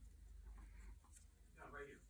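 Near silence, with faint rustling of torn paper strips being pressed and smoothed down by hand.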